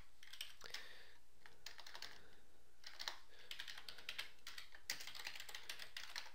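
Typing on a computer keyboard: quick runs of keystrokes with brief pauses between them.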